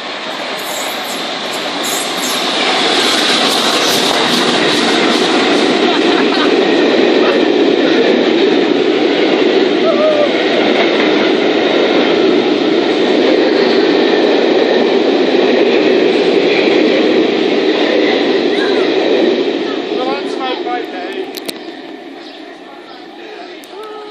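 The LNER A3 Pacific steam locomotive Flying Scotsman and its train of coaches pass close by at speed: a steady rushing rumble of wheels on rail that builds over the first few seconds, holds, then falls away near the end as the train goes off.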